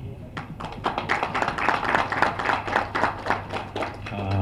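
Audience clapping: a round of scattered, overlapping hand claps that starts about half a second in and keeps going.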